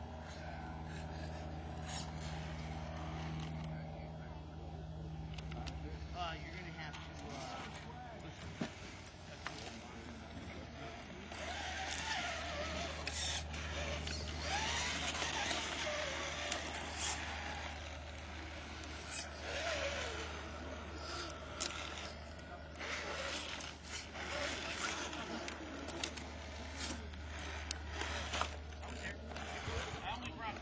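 Indistinct background voices of people talking over a steady low rumble, with scattered clicks and knocks. The voices get louder about eleven seconds in.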